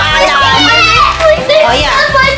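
Children's excited voices and exclamations over background music with a steady bass line.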